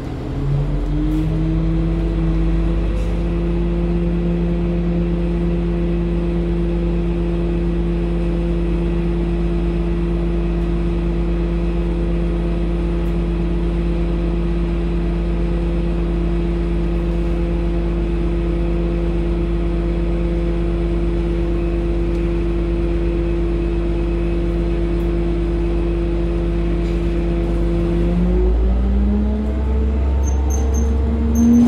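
A city transit bus's engine drone heard from inside the cabin. It steps up slightly just after the start and then holds one steady pitch while the bus stands still. Near the end the pitch climbs as the bus pulls away.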